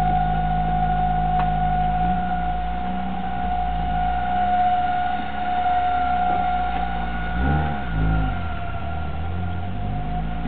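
Chevrolet car engine running at low speed under a steady high-pitched whistle, with the engine note swinging up and down briefly near the end. The whistle is the kind of sound a vacuum leak at a failed PCV part makes.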